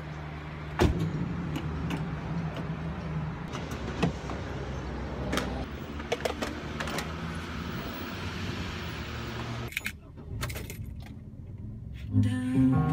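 Refuelling at a gas pump: a loud clunk as the fuel nozzle goes into the car's filler neck about a second in, then a steady pump hum with metallic clicks and clanks of the nozzle while the tank fills. Near the end the sound drops suddenly to a quieter hum inside the car.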